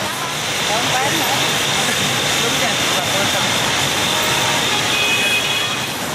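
Steady, dense street noise of motorbike traffic and crowd chatter, with no single voice standing out.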